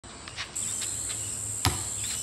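A steady high-pitched insect drone, like cicadas or crickets in the trees, starts about half a second in. About 1.6 s in there is one sharp thump, the basketball bouncing on the concrete court.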